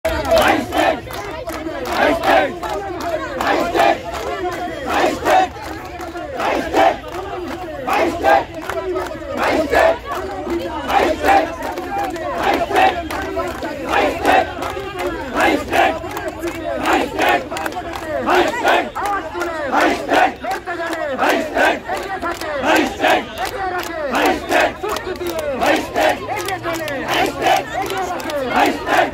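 A crowd of protesters chanting a slogan together, repeating it over and over in a steady rhythm.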